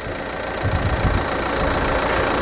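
Mercedes B180's 1.5-litre four-cylinder diesel idling steadily, heard from above the open engine bay, with a brief low rumble partway through.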